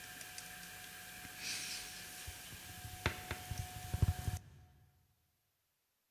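Faint room hiss with a soft breath-like sound about a second and a half in, then a handful of soft clicks and knocks. The recording cuts off to silence at about four and a half seconds.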